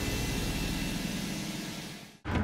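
A steady rushing, rumbling drone from the programme's soundtrack, with no speech over it, fading out near the end.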